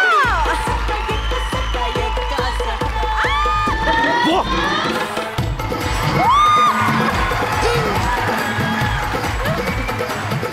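Dance music with a fast, heavy beat, about four beats a second, with an audience cheering and whooping over it; the heavy bass drops out about halfway through.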